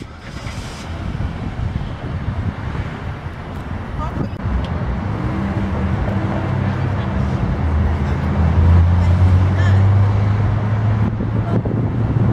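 Car driving on a highway, heard from inside: a steady rush of road and engine noise, with a low hum that grows louder in the second half.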